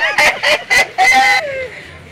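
A chicken clucking: a few short, sharp clucks, then a longer squawk about a second in.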